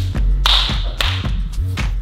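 Hands slapping together in a dap handshake, a few sharp slaps, over background music with a deep bass beat.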